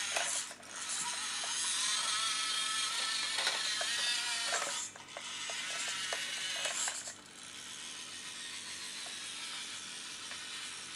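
Electric drive motor and plastic gearbox of a Siku Control 1:32 scale RC Deutz-Fahr Agrotron X720 tractor whining as it drives over a tiled floor. The whine breaks off briefly about half a second, five and seven seconds in, and runs quieter after about seven seconds.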